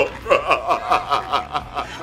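Stifled laughter: a rapid, even run of short chuckles, about six or seven a second.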